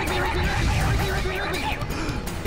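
A cartoon voice chants 'Rigby' so fast that it blurs into a wavering 'wig wig wig', over music and a steady low rumble.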